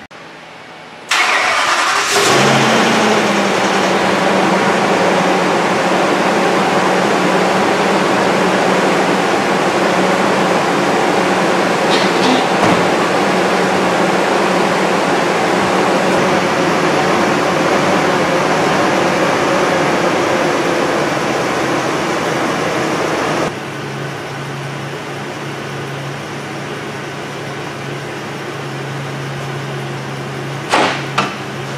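Ambulance engine cranking briefly and starting about two seconds in, then running steadily; near the end it settles to a lower, quieter idle. The exhaust leak at the pipe joint has just been sealed with a new gasket and hardware.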